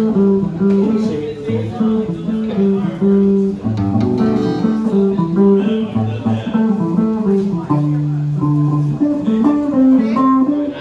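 Electric and acoustic guitars noodling together in a loose jam, one held note after another with a few low notes underneath.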